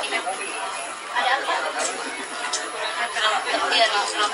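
Speech: a woman talking indistinctly, with chatter from other voices around her.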